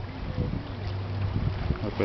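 A steady low hum over an even hiss of background noise, with no distinct knife or cutting sounds standing out.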